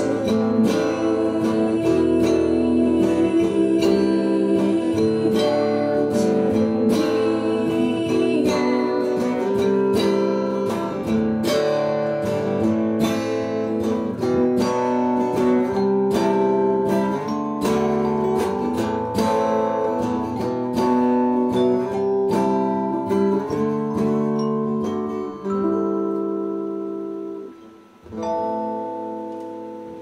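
Live acoustic guitar and electric keyboard playing the close of a slow song, with a woman singing at the start. The music thins out, breaks off about two seconds before the end, and a last chord rings out and fades.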